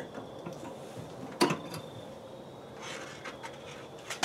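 Handling noises as a temperature probe and its cable are tugged out of the meat inside an electric smoker, with one sharp click about a second and a half in and some soft rubbing later. The probe is caught and does not come free.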